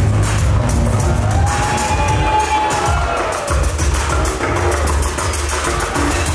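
Electronic music with a heavy, steady bass beat and fast high ticks; a gliding tone arches up and down near the middle, and the bass briefly drops out about three and a half seconds in.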